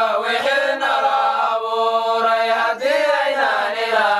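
A nasheed, an Islamic devotional song, sung as background music with long notes that slide up and down.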